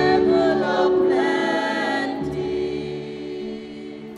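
Small choir singing a hymn; the voices end their phrase about two seconds in, leaving a held chord that fades away.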